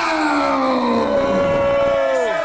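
A drawn-out wailing voice holding a long note that slides slowly down in pitch, with a second lower line falling alongside it.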